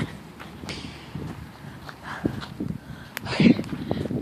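Footsteps through dry grass and rubbing of a handheld phone as the person filming moves backwards, with scattered sharp clicks and a few soft thumps.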